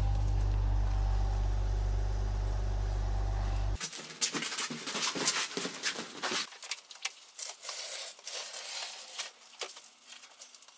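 An Audi Q7 SUV's engine idling close by, a steady low rumble that stops abruptly about four seconds in. Then crackling and rustling of a roll of brown paper being unrolled and spread over paving stones.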